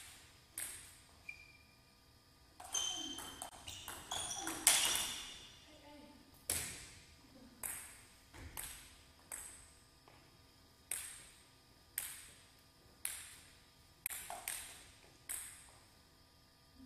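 Plastic table tennis ball clicking off rackets and the table in a quick rally, the loudest hit about five seconds in. After that the ball bounces alone about once a second as a player bounces it before serving.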